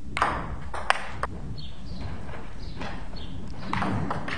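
Table tennis rally: the ball knocks sharply off wooden paddles and the table, about four clicks in the first second and a bit, then a few more near the end.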